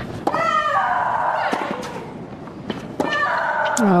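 A tennis rally: sharp racket strikes on the ball, about four in all. Two of them are followed by a player's loud, drawn-out shriek as she hits, one just after the start and one in the last second.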